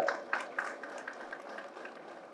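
Audience applause in a hall: scattered clapping that fades away over about a second and a half.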